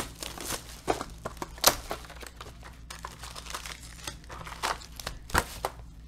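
Plastic shrink wrap being torn and crumpled off a trading-card box: irregular crinkling with a few sharper rips, the loudest about a second and a half in and again near the end.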